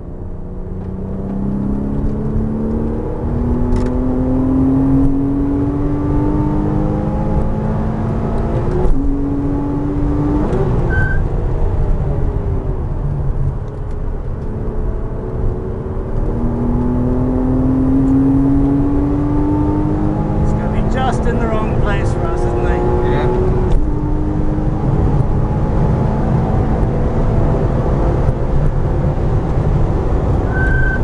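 Porsche Cayman S flat-six heard from inside the cabin under hard acceleration on track: the engine note climbs in pitch through each gear and drops back at each upshift, several times over, over steady road and wind rumble.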